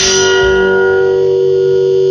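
The last chord of a rock song held and ringing out on electric guitar after the final strum, its higher overtones dying away while one steady note stays loud.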